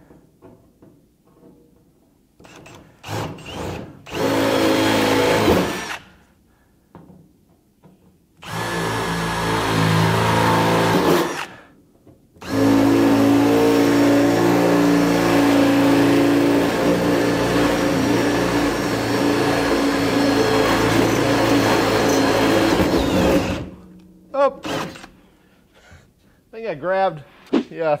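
Milwaukee M18 Fuel cordless drill boring through the sheet-metal lid of a tool chest with an oiled twist bit, in three bursts. A short run comes about four seconds in, another about eight seconds in, and a long run of about eleven seconds from twelve seconds in. Each is a steady motor whine over the grind of the bit cutting metal.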